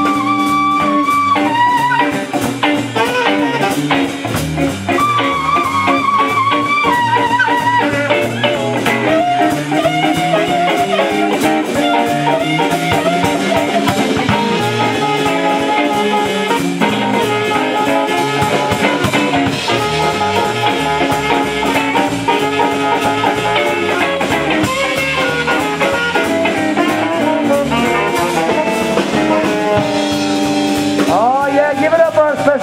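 Live blues band playing an instrumental passage: a tenor saxophone takes the lead with long held notes and running lines over electric guitar, electric bass and drum kit.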